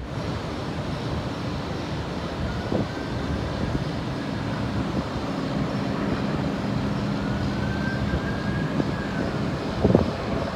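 Steady outdoor vehicle rumble with a low hum, and a faint siren twice rising and falling slowly.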